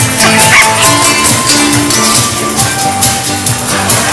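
A live dance band playing loud dance music with a steady drum beat, an instrumental stretch without singing. A short high rising cry stands out over the music about half a second in.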